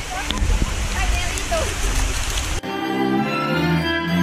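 Steady rushing outdoor noise with a heavy low rumble and a few faint voices, cut off abruptly about two and a half seconds in by string music led by violin.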